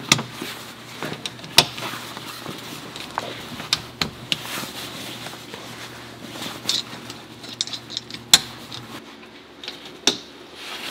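Snap fasteners on a rooftop camper's canvas tent wall being pressed shut one after another from inside: irregular sharp clicks, with the tent fabric rustling as it is pulled into place.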